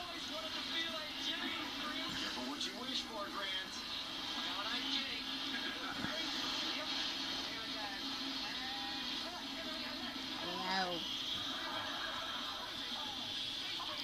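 A television playing quietly in the background: faint, continuous speech from a TV programme over a steady hiss, with a short, louder burst of a nearby voice about eleven seconds in.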